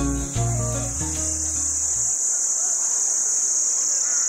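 Insects chirring in a steady high-pitched drone, with background music fading out about two seconds in.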